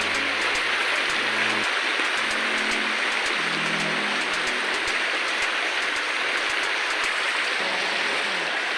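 Steady rush of a shallow, rocky river flowing over stones.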